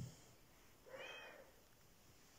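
A calico cat gives one short, faint meow about a second in.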